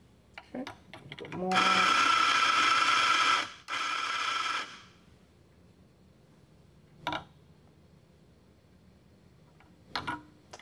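Eureka Mignon espresso grinder's motor grinding coffee beans in two runs, a steady two-second run that spins up at the start, then a shorter one. Light clicks of the portafilter being handled come before and after.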